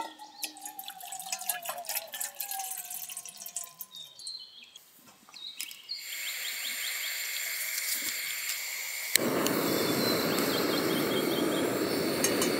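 Water poured from a plastic bottle into a metal camping pot for the first few seconds, its pitch sliding as it pours. Later a canister gas stove starts to hiss as its valve is opened. About nine seconds in, one sharp click is followed by the burner running with a steady, louder rush.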